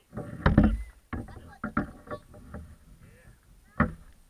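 A burst of knocks and thumps close to the microphone, loudest about half a second in, with scattered knocks after it and one sharp knock near the end.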